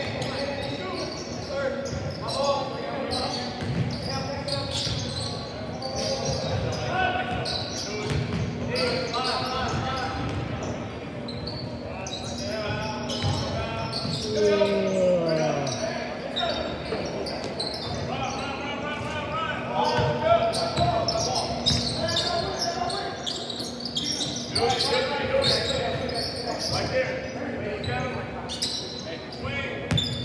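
Basketball being dribbled on a hardwood gym floor, its bounces echoing in a large hall, with players and spectators calling out indistinctly throughout. About halfway through, one voice gives a drawn-out call that falls in pitch.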